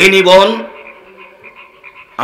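A man speaking into a microphone for the first moment, his words cutting off. A faint steady background hum with a few soft pips follows.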